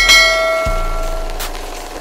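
A bell-like chime sound effect struck once, ringing out and fading over about a second and a half, with a low thump just over half a second in and a short click near the end.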